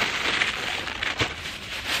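Plastic bags crinkling and rustling as they are handled and unwrapped, with a sharper crackle about a second in.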